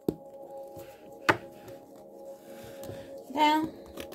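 Tarot cards being handled over soft ambient background music with steady, held tones: a sharp card snap about a second in, with a few lighter taps and clicks around it. A brief voice sound, like a short hum, comes near the end.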